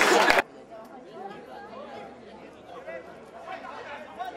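Spectators applauding and cheering loudly for the first half second, then a sudden cut to a much quieter murmur of spectators' voices chatting at the pitch side.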